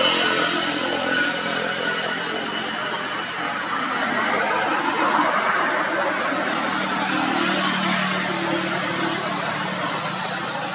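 A motor engine running steadily under a wash of noise, its low hum growing stronger about seven seconds in.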